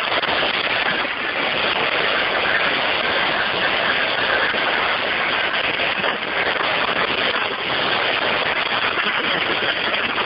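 Steady, loud noise over an unmuted participant's open phone line in an online meeting, with no voice, just a continuous hiss-like rush cut off above the narrow phone band. This is the kind of "noises coming" from a caller's line that the host cannot silence.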